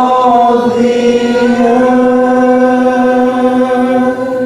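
Worship band singing: voices hold one long sustained note over the band, with a small dip in pitch about half a second in.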